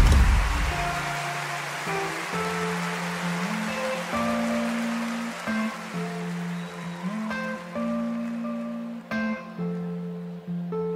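Music: a song's instrumental intro on guitar, single picked notes ringing over low held notes, after a loud noisy swell that dies away during the first second.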